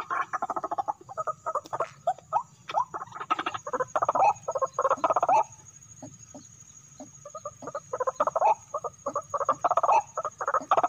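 White-breasted waterhens calling in quick runs of rough, croaking notes. The calls stop about halfway through and start again some two seconds later.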